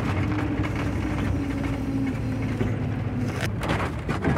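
Vehicle cabin while driving: a steady low engine drone with rumbling tyre noise from a wet road, and a faint hum that sags slightly in pitch partway through.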